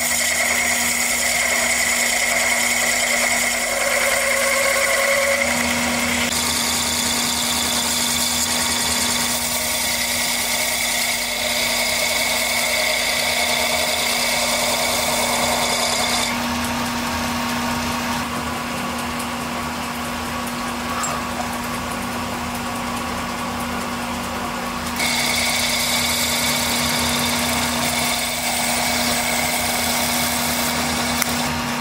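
Metal lathe running with a steady hum while a boring bar cuts a tapered centre hole in a spinning ash wagon-hub block. The cutting noise is strong, eases off for several seconds past the middle, and picks up again near the end.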